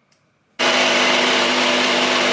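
A NutriBullet personal blender switches on about half a second in and runs loud and steady at full speed, blending a smoothie.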